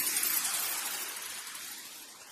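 Transition sound effect: a bright, hissing, glassy wash with a pitch that sweeps down and then back up, fading away steadily.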